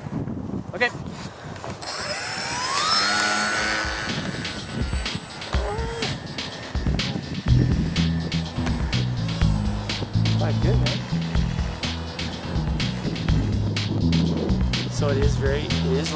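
Electric motor and propeller of a foam RC plane (FT Bloody Wonder) rising to a high whine as it is throttled up for a hand launch, a couple of seconds in. From about halfway on, background music with a steady beat takes over.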